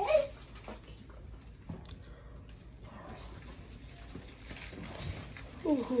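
A baby gives a brief, loud cry as she is given a vaccination shot, then only faint room noise follows.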